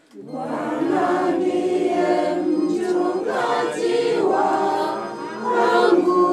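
A group of voices singing a hymn together at a mass, coming in all at once just after the start.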